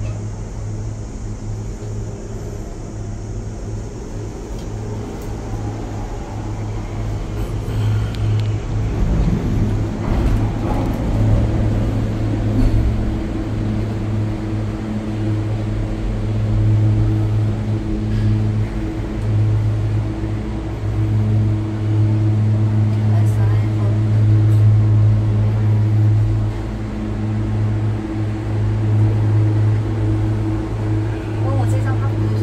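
Steady low mechanical hum inside a Ngong Ping 360 gondola cabin as it runs into the cable car terminal, from the station's drive machinery and cabin-handling equipment. It grows louder from about eight seconds in.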